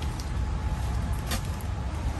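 Steady low rumble of outdoor background noise, with two faint clicks, one early and one past the middle.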